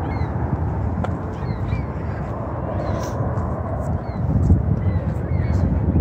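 Outdoor ambience beside a road: a steady low rumble, with a few faint short bird calls.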